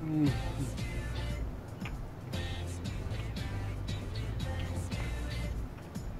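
Background music with a steady, pulsing bass beat. Right at the start a short falling tone stands out above it.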